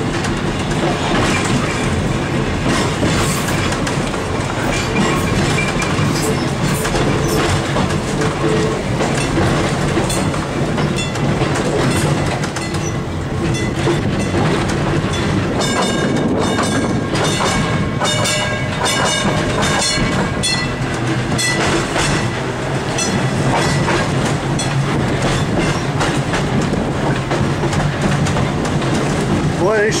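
1911 Huntington Standard streetcar No. 665 running along the track, heard from the operator's platform: wheels clicking and clacking over the rails over a continuous rumble and rattle of the car. A steady high whine joins for a few seconds in the middle.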